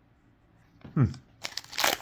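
Foil wrapper of a Topps Chrome baseball card pack crinkling and tearing as it is pulled open by hand. The crackle starts about a second and a half in, just after a short hum.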